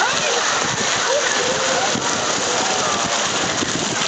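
Steady splashing and rushing of water in a water-park lazy river, with voices calling and talking over it.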